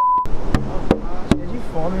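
A single steady high beep, the censor bleep laid over a swear word, for about a quarter second at the start. It is followed by three sharp slaps or claps about 0.4 s apart over talking and laughing voices.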